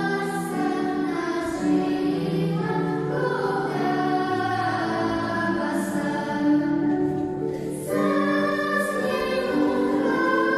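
Children's and youth choir singing a Christmas piece in sustained, held notes, with a brief break for breath about seven and a half seconds in.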